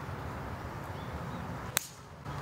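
A 6-iron striking a golf ball off the tee: one sharp click near the end, over a steady outdoor background.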